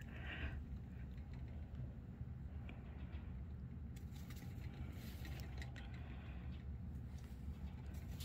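Low steady background rumble with a few faint, light scrapes and ticks, quiet handling noise around a small animal sitting on a kitchen scale.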